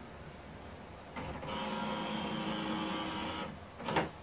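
HP OfficeJet Pro 8135e flatbed scanner mechanism whirring for about two seconds as its motor drives the scan, then a short click just before the end.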